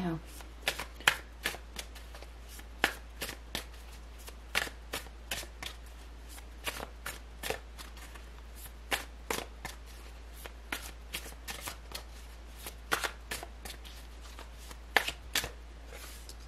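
A deck of tarot cards being shuffled by hand: an irregular run of sharp card snaps and flicks, several a second.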